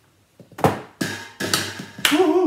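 A tennis ball knocking into a stainless steel pot: a sharp knock a little over half a second in, then two lighter knocks about half a second apart as it bounces inside, with a faint ring.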